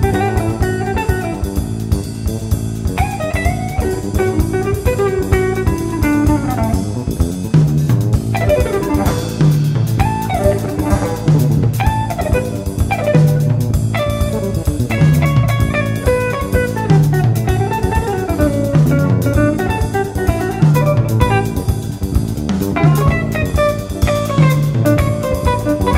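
Live jazz-fusion band playing: electric guitar lines with bent notes over electric bass and a drum kit. From about eight seconds in, a low bass figure repeats steadily.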